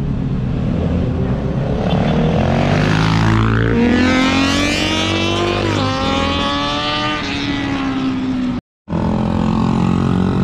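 Road vehicle engines accelerating hard past the roadside, the engine note climbing in pitch, dropping at a gear change, then climbing again. A brief gap of silence near the end, after which another engine carries on.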